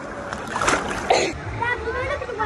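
Wave-pool water churning and splashing around the phone, with two loud splashes about a second in. After a sudden change near the middle, voices are heard over low background rumble.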